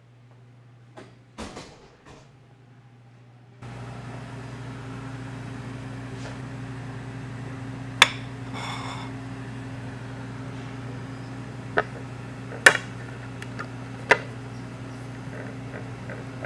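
Table knife clinking sharply against a ceramic plate four times while butter is cut and spread, over a steady low hum that starts about three and a half seconds in.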